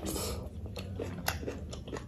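Close-miked eating: a hand-fed mouthful of rice and curry goes in with a short sucking noise, then wet chewing with small clicks.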